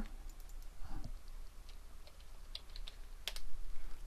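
Computer keyboard typing a short word: a handful of sharp, irregularly spaced keystrokes.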